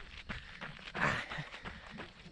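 A runner's footfalls on a gravel trail, a quick run of short crunching steps, with a louder rush of breath-like noise about a second in.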